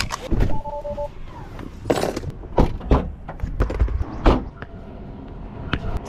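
Seatbelt released inside a Tesla: a sharp click from the buckle, a short two-tone electronic chime, then a run of knocks and thuds from the car door and movement in the cabin.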